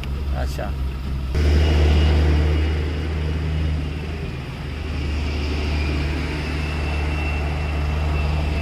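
Steady low rumble of truck and vehicle engines running at the roadside, starting suddenly just over a second in.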